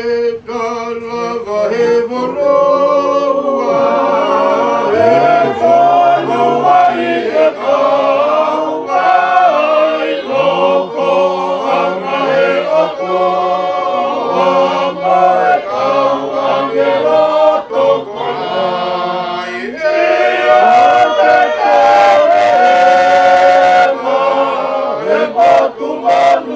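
A group of voices singing a hymn unaccompanied, in sustained phrases, with a short break about three-quarters of the way through before the next phrase.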